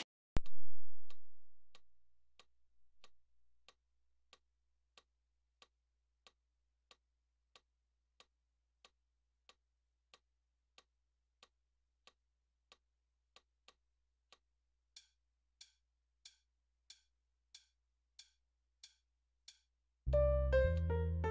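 A loud low thump about half a second in that dies away over about two seconds, then a metronome clicking steadily at about 95 beats a minute. From about fifteen seconds in the clicks are louder, each with a short pitched ring.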